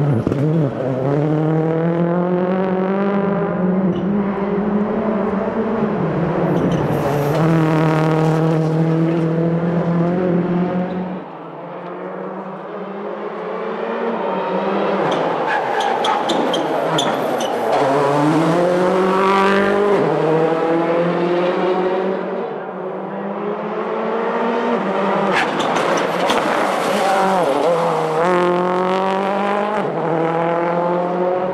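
Ford Focus RS WRC rally car's turbocharged four-cylinder engine driven hard, its pitch climbing through the gears and dropping off again, several times over as the car passes. Sharp cracks come in places among the revs.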